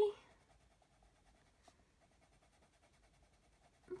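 Faint scratching of an Arteza watercolour pencil shading on paper, with a soft tick a little under two seconds in.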